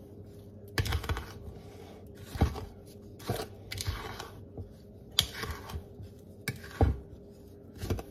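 Wooden spoon stirring dry flour, sugar and sesame seed mix in a large bowl: irregular scraping strokes through the powder, with occasional light knocks of the spoon against the bowl.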